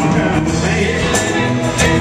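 Live rock band playing in a hall, with electric and acoustic guitars, bass, keyboard and a drum kit, cymbal and drum hits marking the beat.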